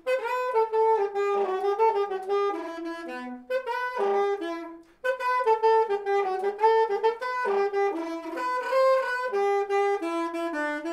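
Alto saxophone playing a solo melody line, one note after another with rich overtones, broken by a short pause about halfway through.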